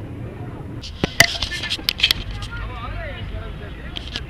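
A handful of sharp knocks and clatters in quick succession about a second in, over a low rumble, with faint voices after them.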